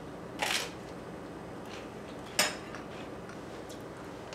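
Someone biting into an everything bagel spread with cream cheese, with a short crunchy burst about half a second in, then a single sharp click a couple of seconds later, over steady room noise.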